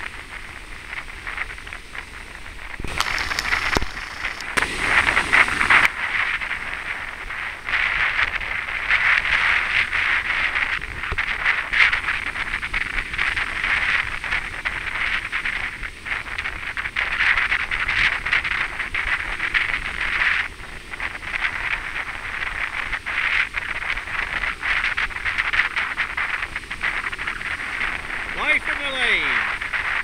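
Ocean surf breaking and washing in the shallows, a steady rush of water that swells and eases, loudest for a few seconds early on.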